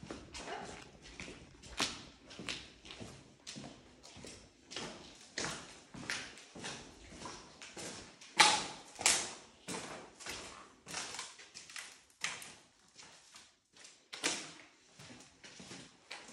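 Footsteps on a gritty, debris-strewn floor, a steady walking pace of sharp scuffing steps, with two louder strikes a little past halfway.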